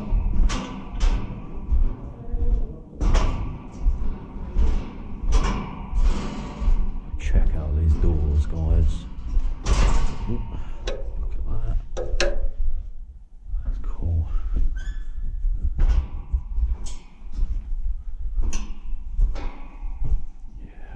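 Footsteps on a metal grating walkway: a run of irregular sharp metallic clanks and thuds, about one or two a second.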